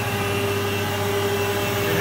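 Dahlih MCV-1450 vertical machining center with its 50-taper spindle running at its top speed of 6,000 RPM: a steady mechanical hum with a constant whine.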